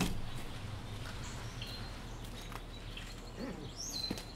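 Quiet outdoor garden ambience: a steady low background hum with a few faint bird chirps near the end.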